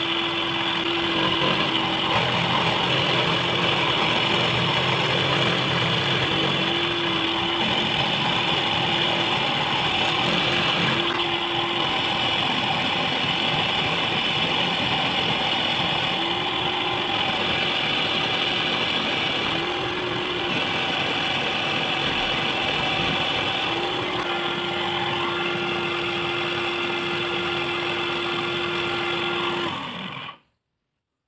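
Small benchtop metal lathe running steadily, its cutting tool turning down a white plastic cylinder on a steel shaft, with a steady high motor whine. A low hum fades in and out several times and holds steady over the last few seconds.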